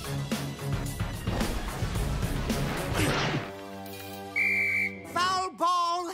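Cartoon soundtrack: busy action music with hits and impacts for the first half, then a held chord. Just past the middle comes a short, steady, high whistle tone, and near the end a wavering, wobbling tone.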